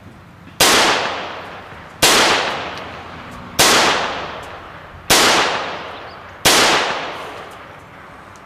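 Five pistol shots fired one at a time, about a second and a half apart, each followed by a long echo that dies away.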